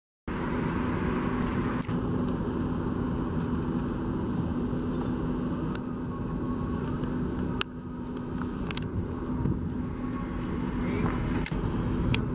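City street traffic: a steady rumble of passing cars with a low hum underneath, broken by a few sharp clicks.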